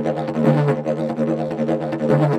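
A 180 cm hard fiberglass didgeridoo with a kevlar core, pitched in D, played as a continuous low drone. Rhythmic pulses reshape its overtones several times a second.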